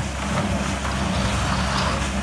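Concrete mixer's engine running steadily with a low hum.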